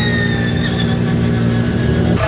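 High electric motor whine of the Audi S1 Hoonitron, slowly falling in pitch and fading out within the first second as the car drives off. Under it runs a steady low engine drone.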